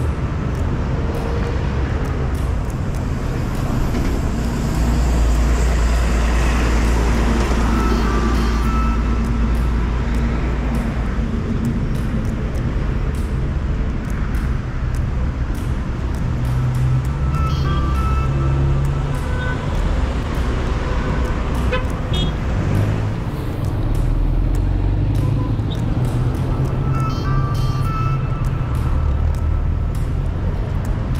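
Road traffic on a city street: cars running past in a steady low rumble that swells twice as vehicles pass close, with music playing over it.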